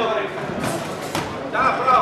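Voices shouting in a large, echoing hall, with two sharp knocks about half a second apart in the middle.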